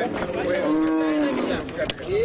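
A herd of cattle mooing, several long calls overlapping one another, one of them lower and held for about a second in the middle.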